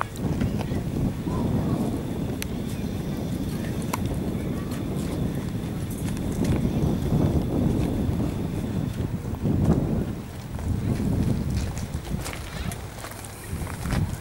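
Indistinct voices over a steady low rumble, with no clear words.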